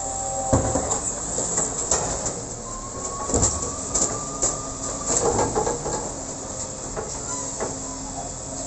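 Side-loader garbage truck's automated arm lifting a wheelie bin, tipping it into the hopper and lowering it again: hydraulic whine with a steady tone held for a couple of seconds in the middle, constant hissing, and several metallic clunks of the bin and arm over the truck's running engine.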